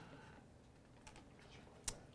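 Near silence, broken by a few faint key clicks and one sharper click near the end: keys pressed on a laptop keyboard.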